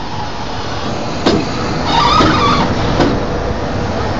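Škoda class 182 electric freight locomotive rolling close past with a train of tank wagons, its wheels knocking sharply over rail joints a couple of times. A brief high squeal about two seconds in.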